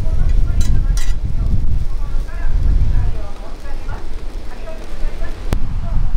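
Wind buffeting the microphone in gusts, a heavy low rumble, with faint voices and one sharp click about five and a half seconds in.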